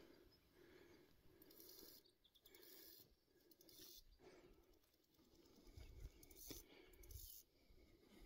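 Near silence: faint outdoor ambience with a few soft rustles, and low rumbles in the second half.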